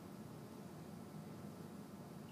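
Quiet room tone: a faint steady low hum with no distinct sounds.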